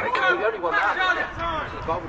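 Speech: a man's voice talking.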